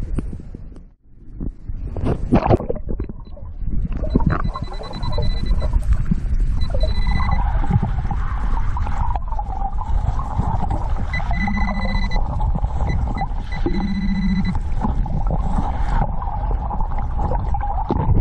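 Underwater sound of shallow seawater, rumbling and sloshing around a submerged camera, with electronic signal tones from a Quest Scuba-Tector underwater metal detector sweeping the sand. High steady beeps come in several bursts, a low buzz sounds twice in the later part, and a wavering tone runs through the second half.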